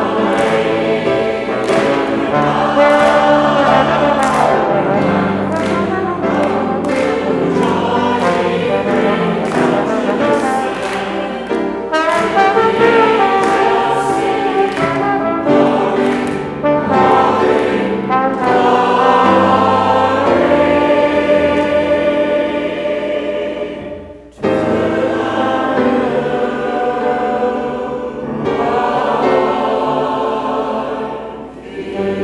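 Congregation singing a hymn in unison, accompanied by trombone and grand piano, with a brief pause for breath about three-quarters of the way through.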